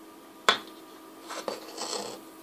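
Hands handling a small LCD module and its jumper wires on a workbench: a single sharp click about half a second in, then faint rubbing and rustling, over a faint steady hum.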